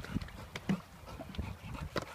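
Dog swimming and paddling, with small irregular splashes in the water.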